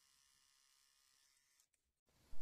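Near silence: a faint steady hiss, dropping out briefly near the end.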